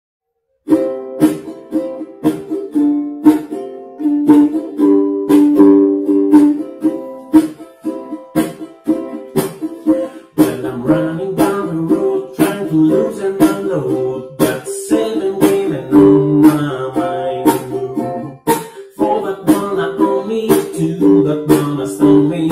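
Ukulele strummed in a steady rhythm as an instrumental intro, starting just under a second in; a lower bass part joins about halfway through.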